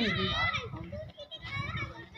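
Background talk in high-pitched voices, quieter than the close conversation around it.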